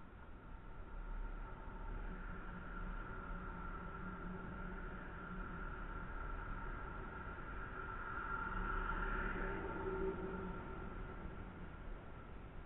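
A faint, steady motor drone with a few held tones, swelling gradually to its loudest about nine or ten seconds in, then fading.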